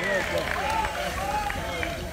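Indistinct voices of several people talking at once, over a steady low rumble.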